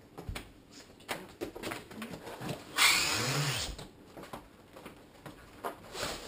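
Footsteps and knocks as a large cardboard box holding a heavy 10 kg chocolate block is handled and lifted. About three seconds in comes the loudest sound, a rushing scrape of cardboard lasting about a second, with a low grunt of effort rising and falling under it.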